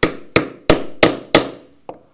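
Mallet blows on a steel rivet setter, setting a rivet through a leather belt on a small anvil: five sharp strikes, about three a second, each with a short metallic ring, then a couple of light taps near the end.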